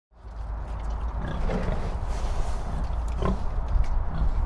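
Farmyard sound effect: pigs grunting over a steady low rumble, with a few short calls standing out.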